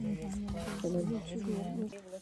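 A woman's voice talking in the background, its words not made out.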